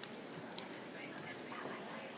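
Faint, low voices and whispering in a room, with a few small clicks and rustles.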